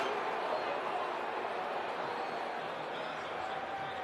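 Stadium crowd noise: a steady murmur of many voices with no clear words, slowly fading.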